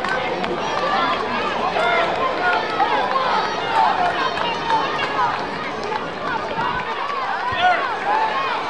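A crowd of spectators at a track meet: many overlapping voices talking and calling out at once.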